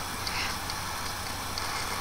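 Room tone in a pause between words: a steady low hum and faint hiss, with a few faint ticks.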